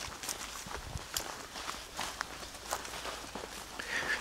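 Footsteps of people walking over dry, weedy garden ground: soft, irregular scuffs and crunches.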